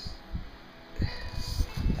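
Handling noise from a handheld camera: irregular low thumps and rustle as the hand moves on and near the device, starting about a second in.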